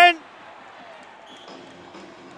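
A commentator's shouted "in!" cuts off just after the start. It gives way to low, steady ice-rink arena background noise with a faint crowd.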